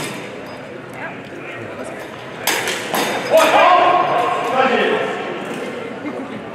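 Steel rapier blades clashing, two sharp strikes about half a second apart, followed by a loud drawn-out shout as the exchange stops.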